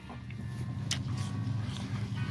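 An engine running with a steady low hum that grows louder, with one sharp click about a second in.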